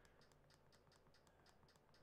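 Near silence, with about a dozen faint, irregular clicks.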